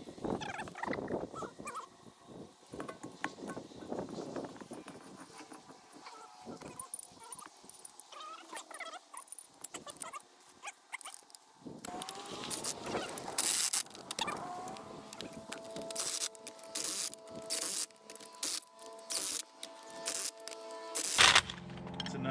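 Light metal tool clicks and clinks, then from about halfway a cordless impact wrench run in a series of short bursts, tightening the bolts of a fire hydrant extension.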